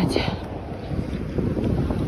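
Wind buffeting a handheld phone's microphone, a steady low rumble.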